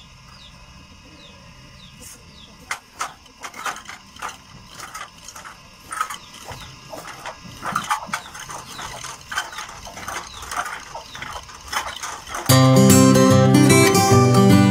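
Homemade pump drill (spindle with a metal flywheel, worked by a crossbar on a cord) driven by hand, giving irregular clicks and scrapes from about three seconds in. Loud strummed acoustic guitar music comes in near the end.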